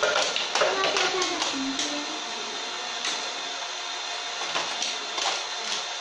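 A motorised plastic toy parking tower running with a steady whir, with light plastic clicks and taps as toy die-cast cars are moved on it; a child's voice is heard briefly in the first couple of seconds.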